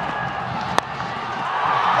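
Stadium crowd noise, with the sharp crack of a cricket bat striking the ball a little under a second in; after it the crowd's cheering swells.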